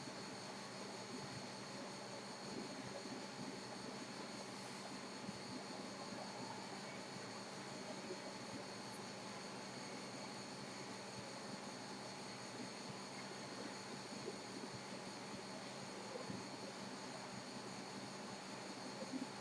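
Low, steady background hiss with a faint electrical hum and a thin high whine, broken by a few faint clicks: open-microphone noise on an online call with nobody speaking.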